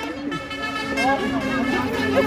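Women's voices talking over a long, steady, unwavering held tone, like a horn or a drone note.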